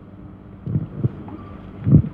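A low rumble of wind on the microphone with a few soft thumps, the handling noise of a handheld microphone being passed from one panellist to another.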